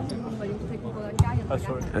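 A basketball bouncing on the arena court, one sharp thump about a second in, over the chatter of voices in the hall.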